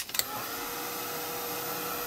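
Handheld craft heat tool switching on with a click and then blowing steadily, with a low motor hum under the rush of air, drying wet ink paint on a journal page.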